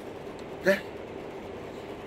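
A pause in a man's talk: one short spoken syllable about two-thirds of a second in, over a steady background hiss.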